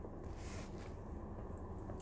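Quiet, steady low background hum with no distinct events.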